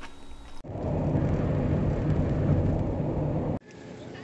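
A loud, steady low noise without any clear pitch, lasting about three seconds and starting and stopping abruptly at cuts.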